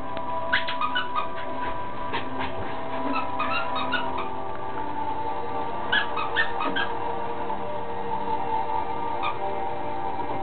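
Small dog giving short, high-pitched yips in several quick clusters while being played with, over steady background music.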